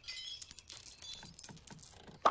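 Small pieces of broken car glass tinkling and clinking, a sparse run of light high clinks, just after a car window has shattered.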